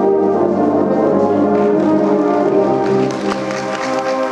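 Marching band brass section, sousaphones among them, playing sustained chords in a large hall, with percussion strikes coming in near the end.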